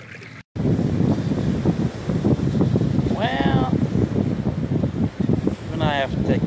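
Wind buffeting the microphone in a steady rumble, starting suddenly after a brief dropout. A short pitched call rises and falls about three seconds in, and another comes near the end.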